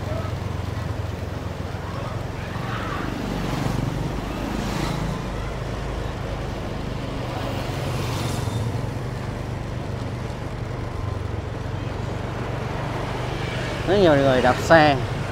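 Road traffic of motorbikes and scooters: a steady low engine hum with a few swells as vehicles pass.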